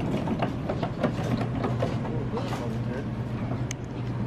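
Shopping cart rolling across a store floor, its wheels and frame rattling with many small clicks over a steady low store hum. Faint voices in the background.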